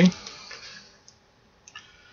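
Quiet room tone with a few faint, short clicks, one about a second in and a couple more near the end.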